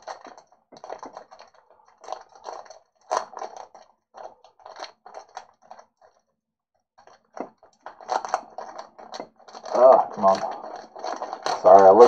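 Foil wrapper of a trading-card pack crinkling and tearing as it is worked open by hand, in short irregular rustles with a brief pause partway through.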